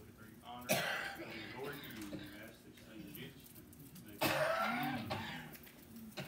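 A man coughing twice, once about a second in and again, longer, about two-thirds of the way through, with faint, indistinct speech in between.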